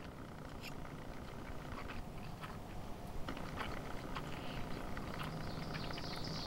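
Faint chewing of a mouthful of barbecue-seasoned tofu and stir-fried noodles, with a few small soft clicks scattered through it.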